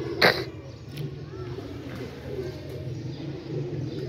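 Domestic pigeons cooing softly and steadily at a rooftop loft. A single short cough comes about a quarter second in and is the loudest sound.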